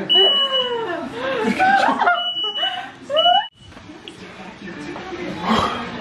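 Household smoke alarm beeping: a high steady tone, three beeps of under a second each in the first half, over people laughing. It is a false alarm with no fire.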